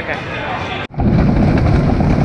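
Wooden roller coaster car on The Racer riding, a loud steady low rumble of track noise and wind heard from a camera in the car. It starts abruptly about a second in.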